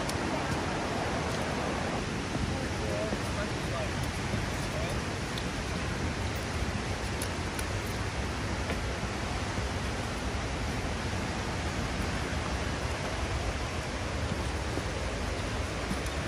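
Steady, even rush of flowing water from a river and waterfall.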